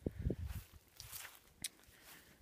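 Footsteps on dry lawn grass, a few soft thuds in the first half second, followed by a couple of faint ticks.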